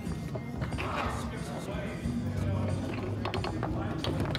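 Foosball table in play: a few sharp clacks of the ball and rods near the end, over background music and murmuring voices.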